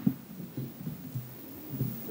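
Faint, irregular low thumps and handling noise from a handheld microphone being picked up, over quiet room tone.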